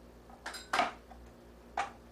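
Knife clinking against a metal baking pan while cutting food: three sharp clinks, the first ringing briefly.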